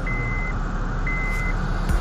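Honda Civic's in-cabin warning chime beeping, a high half-second beep about once a second, three times, over the low steady hum of the idling engine.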